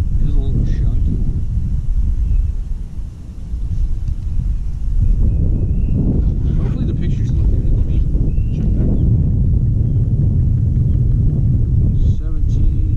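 Wind buffeting the camera microphone: a loud, steady low rumble that eases briefly about three seconds in.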